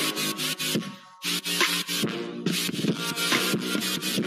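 Background music: sustained synth chords crossed by irregular swishing, noisy strokes, dipping briefly about a second in.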